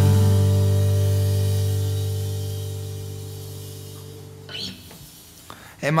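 The final chord of a song on acoustic and electric guitars ringing out and slowly dying away over about four seconds. A man's voice starts to speak right at the end.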